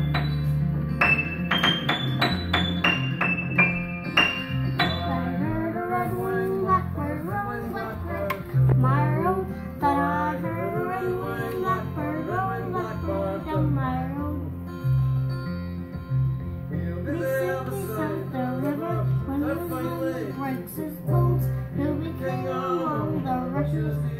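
A young boy playing the piano and singing. It opens with a run of single high notes, each left to ring, and about five seconds in his voice comes in over repeated low chords.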